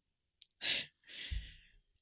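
A woman breathing close to a microphone: a small click, a short breath in, then a longer breath out that fades away.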